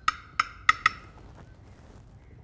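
A spoon clinking against crockery while serving cauliflower purée: four quick, ringing clinks in the first second, then quiet room tone.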